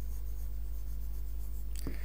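Red marker pen writing on a whiteboard: faint, scratchy strokes over a steady low hum.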